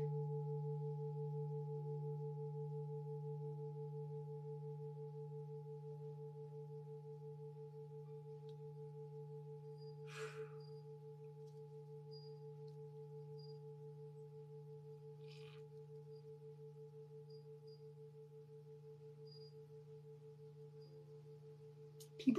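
Large brass Tibetan singing bowl ringing on after being played: a low hum with higher overtones, one of them wavering in a steady beat, fading slowly throughout.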